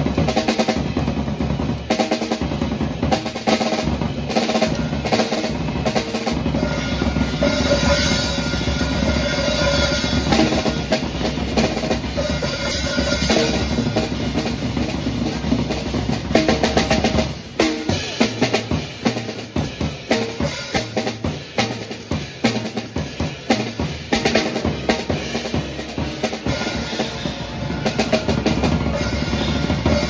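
Jazz drum-kit solo: fast, dense strokes across snare, toms, bass drum and cymbals. After about seventeen seconds the playing turns to sharper, more spaced-out hits with short gaps between them.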